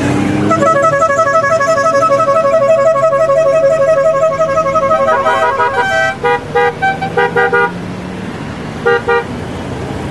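Motorcycle horns honking as a line of Honda Gold Wing touring bikes rides past: a long, pulsing two-tone horn blast for about five seconds, then a quick run of short toots at different pitches, and two short toots near the end. A low engine hum from the passing bikes runs underneath.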